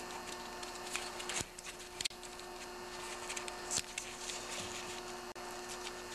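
A few faint clicks and taps of a small bolt and the ignition coil being handled by gloved hands, over a steady electrical hum.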